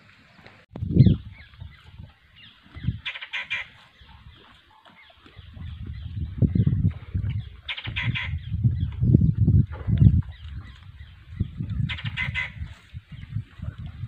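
A bird's honking call, heard three times about four to five seconds apart, over bursts of loud low rumbling noise.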